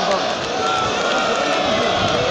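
Large crowd of street marchers, many voices shouting at once in a steady, dense roar of overlapping voices.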